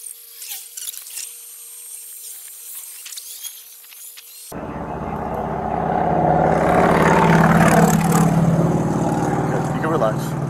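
A thin, filtered-sounding stretch with a faint steady hum. About four and a half seconds in, it gives way suddenly to a motor vehicle's engine and road noise, which swells for a few seconds and then holds steady.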